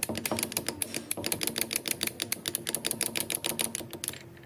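Rapid, even metallic clicking, about ten clicks a second, as a grader transmission shaft is turned by hand inside its stack of gears. It stops abruptly at the end, over a steady low hum.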